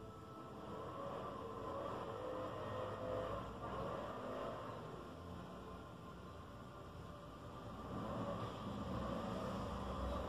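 Quiet low rumbling background noise that swells about a second in and again near the end, as a person lying on floor blankets rolls onto her side.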